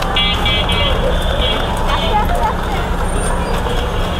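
Busy street traffic with a constant rumble and background voices; a vehicle horn beeps several times in quick succession in the first couple of seconds.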